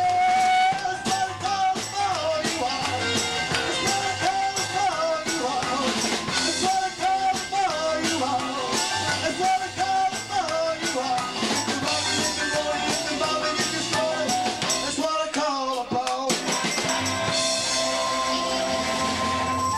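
Rockabilly song played live: a man singing over a hollow-body electric guitar and a second guitar. About sixteen seconds in the singing stops and the guitars carry on into an instrumental break.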